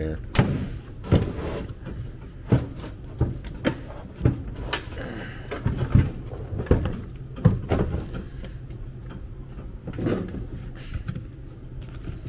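Hard plastic knocks and clunks, a dozen or so spread irregularly, as a Milwaukee Packout tool box and its lid are moved and handled, over a steady low hum.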